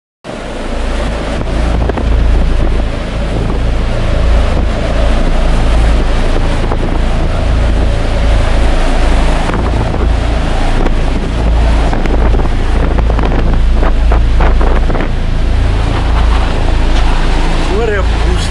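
Strong storm wind buffeting the microphone on a ship's open deck. It cuts in suddenly and runs as a loud, gusting low rumble under a rushing hiss of wind and rough sea.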